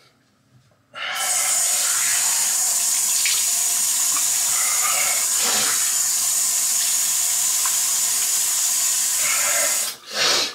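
Bathroom sink faucet turned on about a second in, water running steadily into the basin, then shut off abruptly at the end. A couple of faint splashes are heard from hands in the water.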